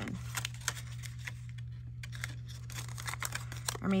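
Paper scoring on a plastic scoring board with a bone folder: a few light clicks and taps of the tool and cardstock against the board, with a faint rub between them, over a steady low electrical hum.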